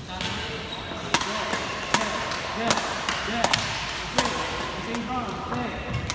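Badminton rackets striking shuttlecocks in a rally drill: sharp hits about one every three-quarters of a second, echoing in a large indoor hall.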